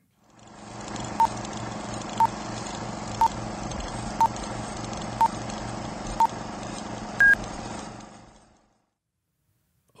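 Electronic countdown beeps: six short beeps one second apart, then a longer, higher final beep, over a steady hum and hiss. The final beep is the sync cue marking the moment to start the film along with the commentary track.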